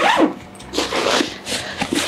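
Zipper on a canvas bag being pulled open in several short, noisy rasps.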